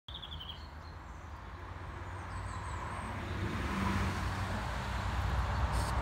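Traffic on a busy road: a steady rumble that grows louder over the few seconds as vehicles pass. A few short bird chirps come near the start.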